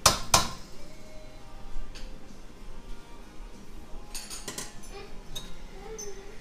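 A metal spoon knocking against a stainless steel pot, with one sharp clink near the start. A few scattered lighter clinks and knocks follow, the last of them in a quick cluster near the end, as kitchen utensils are set down and handled.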